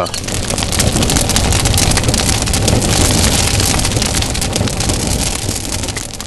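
A loud, dense rushing noise full of fine crackles. It starts suddenly and eases off near the end.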